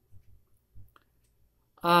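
A few faint, small clicks in near quiet, then a man's drawn-out "um" near the end.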